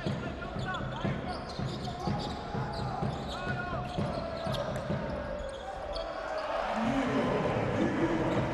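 Basketball dribbled on a hardwood court in a steady rhythm, with brief sneaker squeaks and arena crowd noise that rises near the end.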